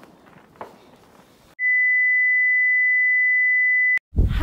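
A steady, high-pitched electronic beep, a single pure tone, starts about a second and a half in and cuts off suddenly near the end. Everything else drops out while it sounds. Before it there is only faint outdoor hiss with a few soft clicks.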